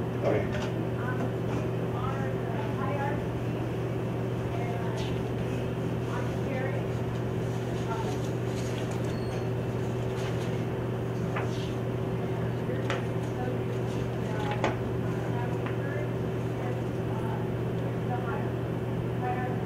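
Classroom room tone: a steady low hum with faint voices murmuring in the background and a few soft knocks.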